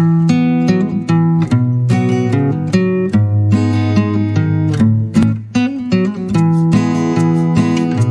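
Background music of a strummed acoustic guitar, cutting in suddenly at the start and playing steady chords throughout.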